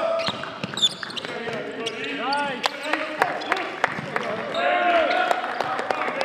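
A basketball bouncing repeatedly on a hardwood gym floor during live play, with short squeaks of sneakers and players' shouts mixed in.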